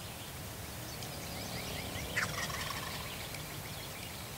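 Wild turkey gobbler gobbling once, a fast rattling run of notes that peaks about two seconds in.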